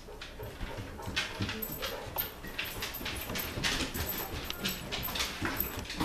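Excited basset hound moving about on a wooden floor: irregular claw clicks and scuffles mixed with small whines, the dog eager to go out for a walk.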